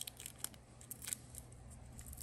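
Faint scattered clicks and crinkles of fingers pulling a small piece of packaging off a metal door-lock latch and handling the latch.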